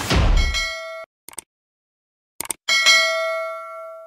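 Subscribe-button animation sound effects: a short whoosh, then a bell-like ding that cuts off about a second in. A few clicks follow, then a second ding that rings out and fades near the end.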